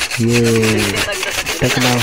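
A man's drawn-out speech over a steady, rapid mechanical ticking of about a dozen clicks a second.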